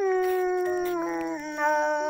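A woman singing a Dao courtship song: one long held note that sinks slightly and steps down to a lower note about a second and a half in, with a lower steady tone sounding beneath it.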